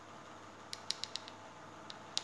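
A quick run of about five faint, light clicks in half a second, then one more near the end, over quiet room tone.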